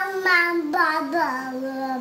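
A drowsy baby vocalizing in a few long, sing-song notes that waver, slide lower and settle on one held tone: fussy moaning from an infant fighting sleep.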